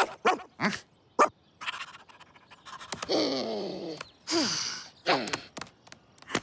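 Cartoon dog sounds: a string of short pants and grunts, then a longer falling whine about three seconds in and a short falling cry just after four seconds.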